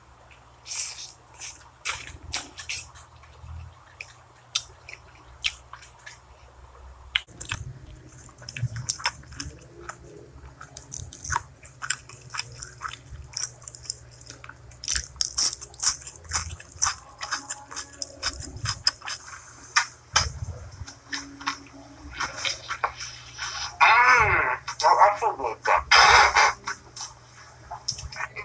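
Close-miked eating sounds: chewing, crunching and wet smacking of fried food and sauce, heard as quick irregular clicks and crackles. Near the end a voice with a wavering pitch rises over the chewing.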